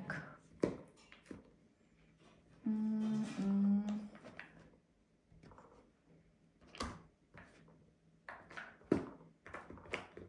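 Scattered knocks and clicks of objects being handled off camera, as a different tarot deck is picked out, with the sharpest knocks near 7 and 9 seconds. A short hum from the reader about three seconds in.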